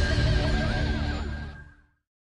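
TV news theme music playing over the logo ident, fading out and ending in silence just before the end.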